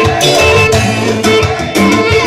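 Loud amplified live dance music from a band, with a steady beat and sustained melody instruments.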